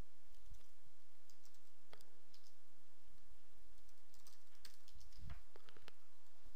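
Computer keyboard typing: scattered key clicks, some in short quick runs, over a steady low hum.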